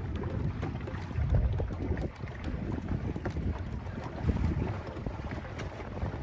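Wind buffeting the microphone in an uneven low rumble, with water washing along the hull of a boat moving through open water.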